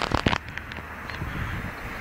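A quick cluster of sharp clicks in the first half second, then steady background noise.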